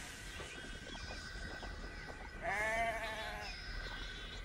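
A sheep bleating once, a wavering call about a second long, past the middle.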